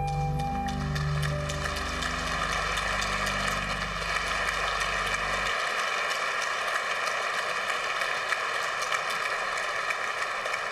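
Audience applauding, a dense steady clatter of many hands. Under it the flute's last note stops within the first second, and the electronic keyboard's held low chord cuts off about halfway through, leaving the applause alone.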